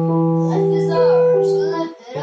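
Electronic keyboard playing a held chord with slow melody notes over it, while a young girl sings along, her voice wavering above the keys. The sound drops briefly at the very end as the chord is released.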